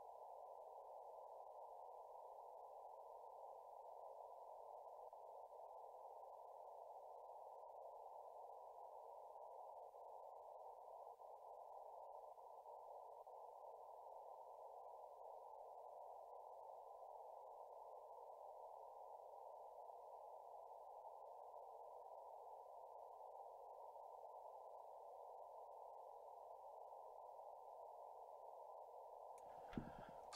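Faint, steady receiver hiss from an Elecraft K3S transceiver's speaker, band noise squeezed into a narrow middle pitch range by the radio's CW filter, left playing with the volume up.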